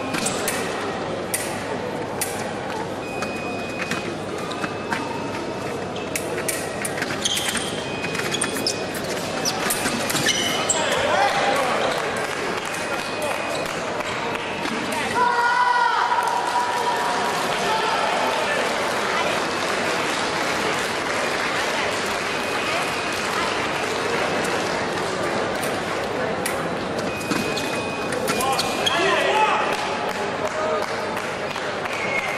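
Foil fencing bout in a large echoing hall: sharp clicks of blades and feet on the piste, short high squeaks, and voices in the background, with a shout about halfway through.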